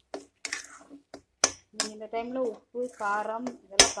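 A person talking, broken by sharp clicks of a metal spatula knocking against a metal kadai as thick chutney is stirred. The loudest knock comes near the end.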